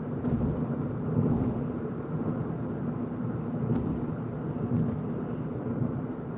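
Road and engine noise inside a moving car: a steady rumble with a constant low hum, and a few faint ticks.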